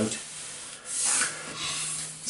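Hands rubbing a sheet of sticky-backed paper flat onto a wooden board: a dry papery swish, loudest about a second in.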